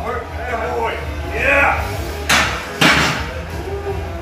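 A loaded barbell set back into a power rack's steel hooks at the end of a set of presses: two metallic clanks about half a second apart, a little past halfway.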